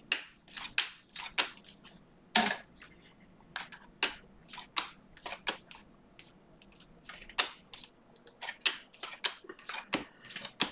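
A stack of Panini Mosaic trading cards being flipped through by hand, each card slid off the stack with a short crisp flick. The flicks come irregularly, about two a second, with the sharpest one about two and a half seconds in.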